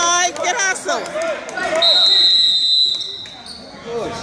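Basketball game in a gym: sneakers squeaking and voices on the court, then a referee's whistle about two seconds in, one steady shrill blast lasting over a second.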